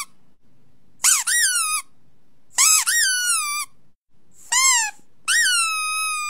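A squeaky-toy squeak played four times, each squeak high-pitched and rising then falling in pitch. The last is longer and held.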